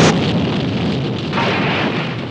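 Film sound of a car exploding: a loud blast at the start, then a fading noise of fire and debris, with a smaller swell about a second and a half in.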